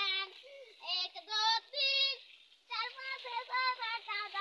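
A child's high-pitched voice in a run of short, pitched phrases, with a brief pause about halfway through.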